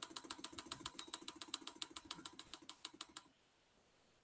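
Computer mouse scroll wheel clicking through its notches in a fast, even run of about ten clicks a second, stopping suddenly about three seconds in.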